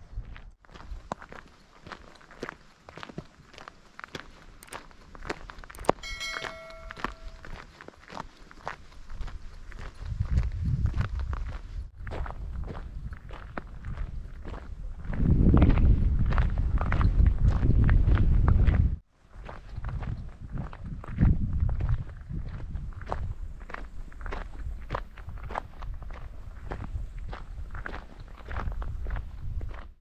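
Footsteps crunching on a gravel track at a steady walking pace, with wind gusting on the microphone as a deep rumble that is loudest about halfway through.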